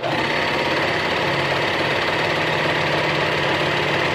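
Serger (overlocker) running at a steady speed with a fast, even stitching rhythm, sewing a stretched neckband onto medium-weight knit fabric. It starts abruptly.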